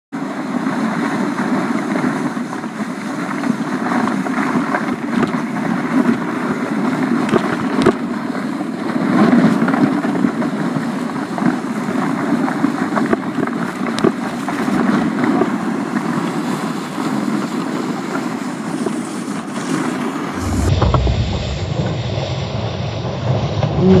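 Plastic sled hissing and scraping over snow at speed: a steady loud hiss with scattered crunchy ticks, mixed with wind on the microphone. About three seconds before the end it turns abruptly into a deep, muffled rumble.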